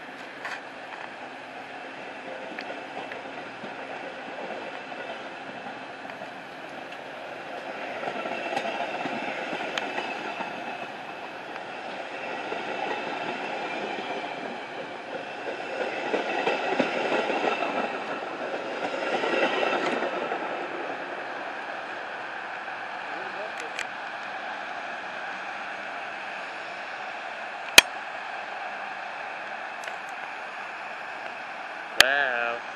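Metra bilevel commuter train rolling out of the station close by, its steel wheels rumbling along the rails, swelling louder twice in the middle as the cars pass and then settling as it pulls away. A single sharp click near the end.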